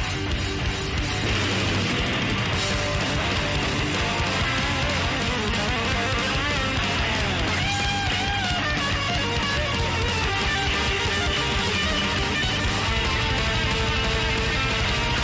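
Rock music with distorted electric guitar, loud and steady, with a line of bending, gliding notes in the middle.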